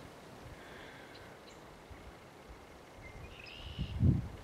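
Quiet outdoor ambience with a few faint, short bird chirps in the distance, and a low rumble rising near the end.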